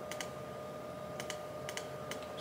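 A handful of light clicks from a computer's keys or mouse buttons, two of them in quick pairs, over a faint steady tone.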